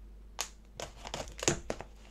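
A small knife cutting open a cardboard parcel, with a string of sharp clicks and crinkles of tape and packaging; the loudest snap comes about one and a half seconds in.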